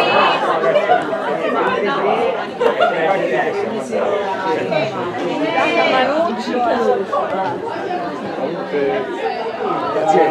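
Several spectators talking over one another close by, a steady chatter of overlapping voices with no single clear speaker.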